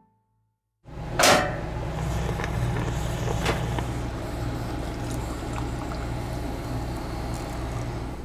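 Coffee poured from a Bialetti stovetop moka pot into a stainless steel pitcher, with metal clinks and a sharp clank about a second in, over a steady low hum.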